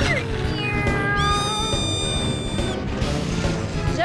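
Cartoon background music with a high whine laid over it, held for about a second and a half.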